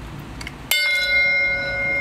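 A piece of steel on the pull-out test rig is struck once about two-thirds of a second in, with a sharp clang that rings on with several clear bell-like tones.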